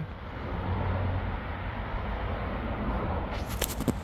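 Steady low background rumble and hiss with a faint continuous hum, holding level throughout; a few faint higher rustles come in near the end.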